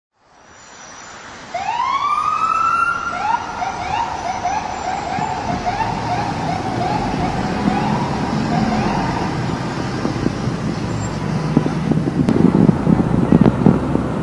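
Police car siren: a rising wail about a second and a half in, then a fast repeating yelp for several seconds, over wet street traffic noise.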